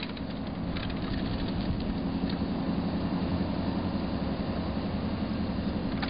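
A car driving along a road: a steady engine hum over tyre and road noise.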